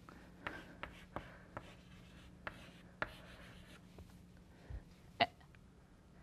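Chalk writing on a chalkboard: faint scratchy strokes and light taps as letters are written, with a sharper click about five seconds in.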